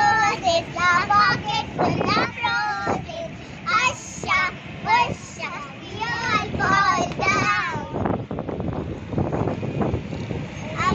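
Young girls singing a circle-game rhyme together in high voices, in short phrases with brief breaks.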